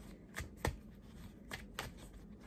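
A tarot deck being shuffled by hand: a few short, quiet clicks and slides of cards against each other, about four in all.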